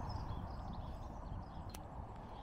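Quiet outdoor background: a steady low rumble with a single faint click near the end.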